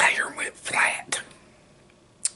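A man whispering close to the microphone: a short, breathy phrase in the first second or so.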